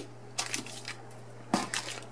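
Short crinkling and rustling of paper and cardboard as a sneaker is lifted out of its shoebox, with the loudest rustle near the end.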